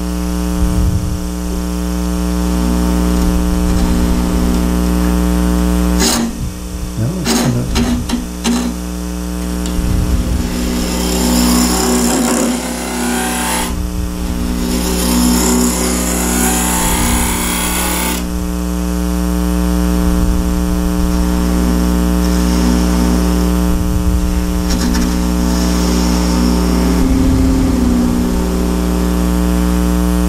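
Wood lathe running with a steady hum while a gouge cuts into the end grain of a spinning wooden blank, making a starter hole at the centre. A few sharp clicks come about six to eight seconds in, and the cutting is loudest as a hissing scrape from about ten to eighteen seconds in, with a weaker spell later.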